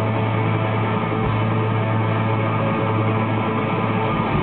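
Live rock band playing an instrumental stretch with electric guitars and drums over a steady low sustained note. It sounds loud, dense and muddy, as picked up by a small camera in the crowd.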